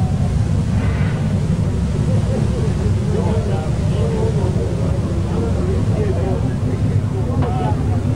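Grand National sedan race car engines rumbling steadily at low revs as the cars run slowly in a nose-to-tail line-up before the start.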